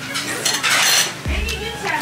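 Eating noodle soup at a table: metal spoon and chopsticks clinking against bowls, with a slurp of noodles in the first second.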